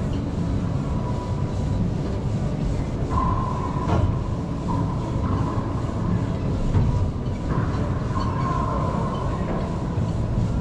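Steady low rumble filling the enclosed racquetball court, with a sharp knock of the ball about four seconds in and several faint high squeaks of court shoes on the hardwood floor.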